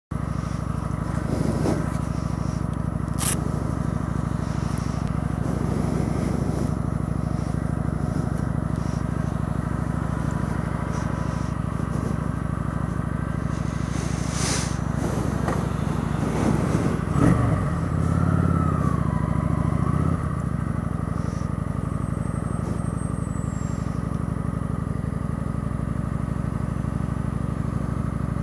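Motorcycle engine idling steadily at a stop; a little past halfway it picks up as the bike pulls away.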